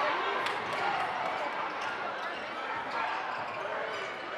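Basketball dribbled on a hardwood gym floor, bouncing in short sharp strikes under the talk of the crowd in the hall.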